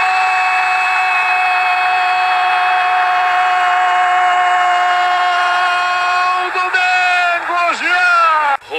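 A Brazilian TV football commentator's long drawn-out "Gooool!" goal cry, held on one steady pitch for about seven seconds. Near the end it breaks into shorter falling shouts.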